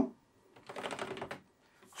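A quick run of plastic button clicks and control handling on a Midas M32 digital mixing console, lasting about a second, as the channel buttons on the first eight strips are pressed to open those channels.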